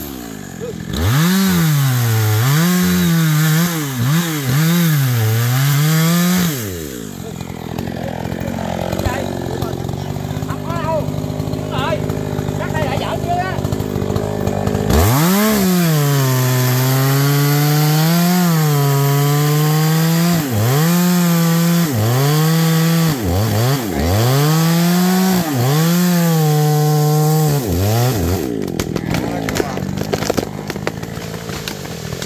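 GZ4350 two-stroke petrol chainsaw cutting into a tree trunk, its engine revving up and sagging again and again as the chain bites. For several seconds in the middle it runs at a lower, steadier speed between cuts, and it drops back near the end.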